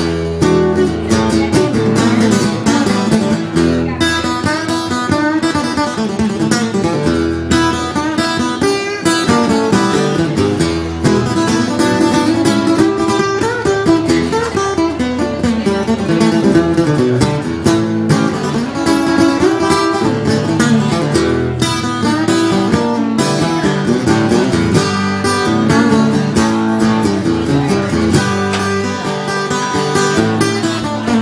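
Acoustic guitar played solo in a steady, strummed and picked blues groove with no singing, as an instrumental break between verses.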